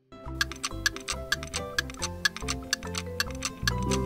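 Light background music with a clock ticking over it at about three ticks a second, starting just after a brief silence: a countdown timer sound effect marking the time to answer a question.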